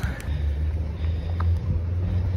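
Low, steady outdoor rumble, with one faint click about one and a half seconds in.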